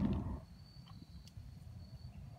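Low rumbling handling noise that dies away within the first half second, then an insect holding one steady, thin, high-pitched trill.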